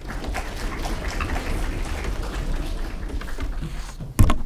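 Audience applauding, a steady patter of many claps.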